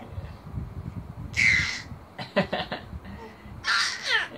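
A baby's harsh, raspy squeals: one about a second in, a few quick short bursts a little after two seconds, and another near the end.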